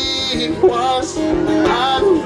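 A man singing a slow love ballad to his own acoustic guitar accompaniment, performed live.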